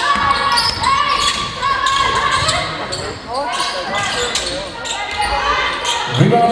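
Live basketball play on a hardwood court: the ball bouncing and sneakers squeaking in many short high chirps, with players' voices calling out, all echoing in a large sports hall.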